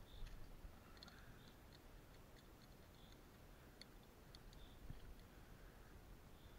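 Faint, scattered clicks of metal carabiners and climbing gear being handled at a bolt anchor, over near silence.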